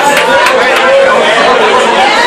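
Crowd of many people talking at once: loud, steady chatter with overlapping voices and no single voice standing out.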